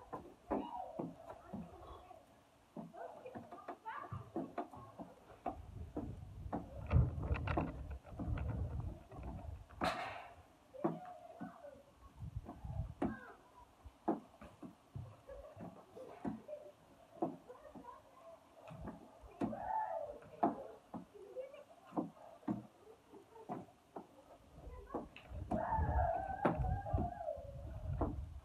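A man working out with a medicine ball, with short voice-like sounds of effort, scattered knocks and thuds throughout, and stretches of low rumble.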